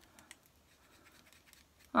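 Faint scratching with a few light ticks near the start from a twist-up cosmetic pencil being twisted all the way up, its stick used up so nothing comes out.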